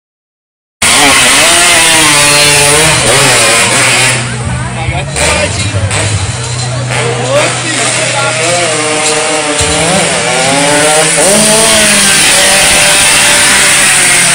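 Motorcycle engine running loud at high revs, its note shifting a few times as the throttle changes.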